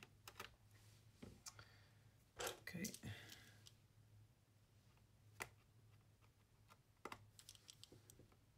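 Faint, scattered clicks and taps from handling the plastic case of a Casio FX-7000GA calculator and fitting a small screwdriver to the screws on its back to open it. There is one sharper click about five seconds in, and a few more near the end.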